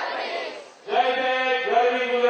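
A large crowd's voices reciting together in unison, fading out just before a second in; then chanting in long held notes begins.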